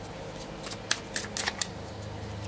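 A deck of cards being shuffled and handled by hand: a quick run of light, crisp clicks and snaps lasting about a second.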